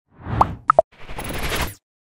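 Logo-animation sound effects: a short whoosh, then two quick pops close together, the second lower than the first, then a longer rushing whoosh that builds and cuts off sharply.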